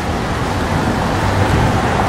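Steady street noise: a low rumble with an even hiss over it, like traffic on a city street.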